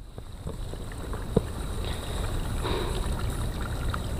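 Outdoor wind rumbling on the microphone, growing slightly louder, with a single sharp click about a second and a half in.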